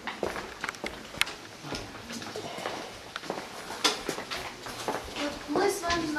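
Irregular light knocks and clicks from a group moving about in a cave, with low voices, and a voice speaking near the end.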